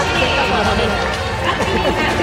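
Crowd of spectators in a ballpark's stands, many voices talking over one another at once.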